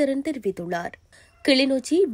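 Speech only: a newsreader reading in Tamil, with a brief pause about halfway through.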